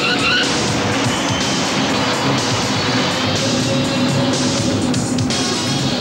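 Dramatic film music over a vehicle engine running hard, with a brief rising squeal right at the start.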